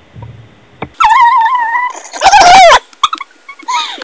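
High-pitched voice squealing in two long, wavering cries, the second louder, followed by a few short yelps near the end.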